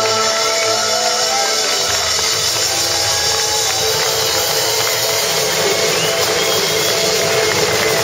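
Live band music: a steel-string acoustic guitar strummed over a drum kit, with cymbals washing steadily.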